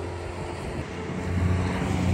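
Motorcycle engine running steadily while under way, growing a little louder near the end.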